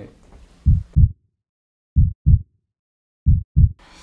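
Heartbeat sound effect: three double thumps about one and a third seconds apart, each pair a quick low beat and its echo, with dead silence between them.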